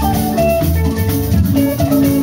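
Live dance band playing an upbeat number driven by a drum kit.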